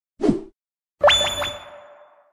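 Sound effects of an animated logo intro: a short swoosh gliding down in pitch, then about a second in a sudden hit followed by a ringing tone that fades out over about a second.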